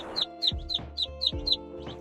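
Muscovy ducklings peeping: a run of short, high chirps, each sliding downward, about three a second, over faint steady background music.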